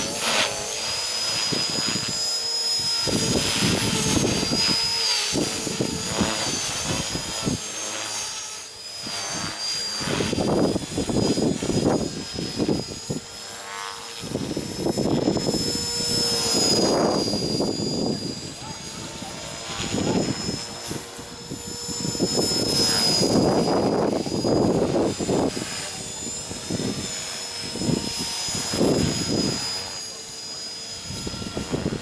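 Radio-controlled helicopter in flight: a steady high whine from its motor and rotors, wavering a little in pitch, with the rotor sound swelling and fading every few seconds as it manoeuvres.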